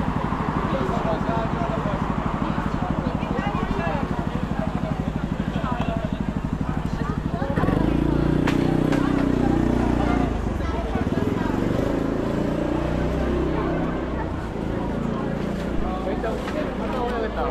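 Big scooter engine idling with a fast, even pulse; about seven and a half seconds in, a louder engine sound comes in suddenly and eases off over the following seconds, with passers-by talking.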